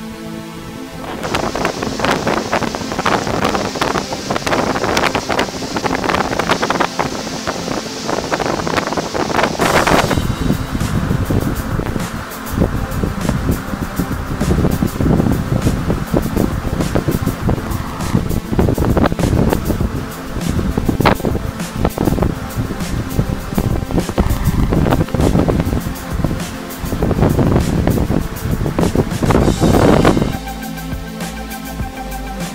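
Rough sea surging and breaking over shoreline rocks, with wind buffeting the microphone, in loud irregular surges. Background music plays underneath.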